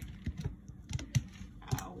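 Plastic tortilla bag being handled, giving a few irregular crinkles and clicks.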